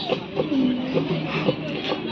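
A voice singing into a microphone through a public-address system, with a longer held note about half a second in.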